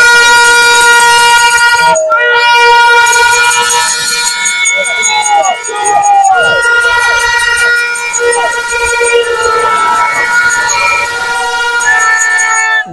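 Handheld horns blown by a street crowd in long, continuous blasts, several pitches overlapping, with short breaks about two seconds in and again about six seconds in. Crowd voices can be heard beneath them.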